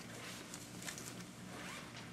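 Faint, brief rustling noises, twice, over a steady low hum in a quiet room.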